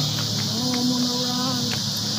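Steady high-pitched insect buzz that holds unchanged throughout, with faint held music tones underneath.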